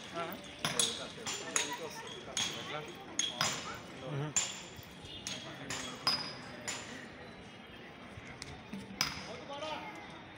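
Metal bells struck about a dozen times at uneven intervals, each strike sharp with a high ringing, then a pause and one more strike near the end.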